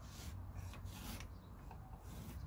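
Pencil scratching along a laminated wooden guitar-neck blank in a few short, faint strokes as a rough neck outline is traced.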